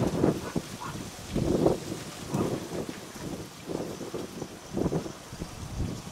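Strong wind buffeting the microphone in irregular gusts, each rising and falling over a fraction of a second.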